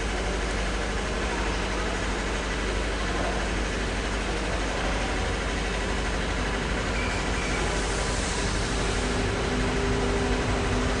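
Renfe class 269 electric locomotive hauling a train in towards the platform, heard at a distance as a steady rumble. A low hum grows and the sound gets slightly louder near the end as it draws closer.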